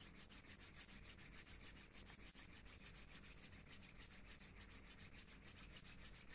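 Bare palms rubbed briskly together, a faint, quick, even swishing of skin on skin at about eight strokes a second.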